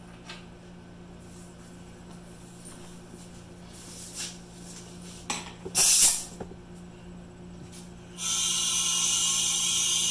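Air hose quick-connect coupler clicked onto a resin-casting pressure pot's inlet, with a short, loud burst of air a little past the middle. From about eight seconds, a steady loud hiss of compressed air flowing in as the pot is pressurised.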